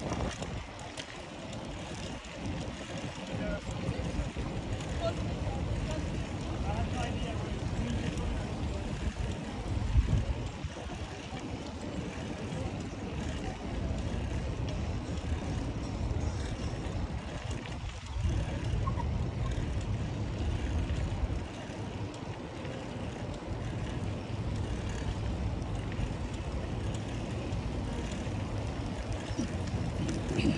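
Wind rumbling on the microphone of a moving bicycle, with rolling noise from the ride over brick paving and a single thump about ten seconds in.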